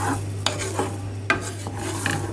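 Wooden spoon stirring a thick, simmering raspberry and chia seed jam mixture in a stainless steel saucepan, with a couple of sharp knocks of the spoon against the pan. A steady low hum runs underneath.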